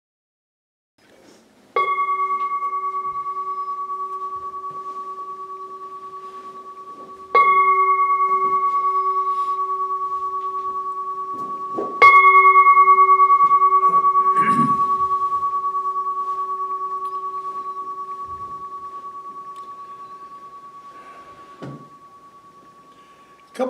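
Large standing singing bowl struck three times, a few seconds apart. Each strike rings on as a steady, slightly wavering tone that slowly fades, and the third is the loudest and rings out longest.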